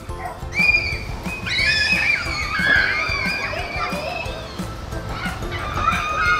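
Children shrieking and squealing with excitement, in high wavering glides, over background music.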